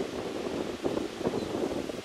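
Wind buffeting the microphone outdoors, an uneven fluttering rumble.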